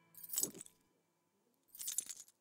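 Metal keyring jangling twice, briefly, about a second and a half apart, as a bag is handled.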